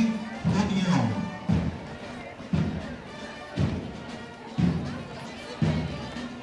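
Parade music with a low, heavy drum beat about once a second, keeping the marching pace.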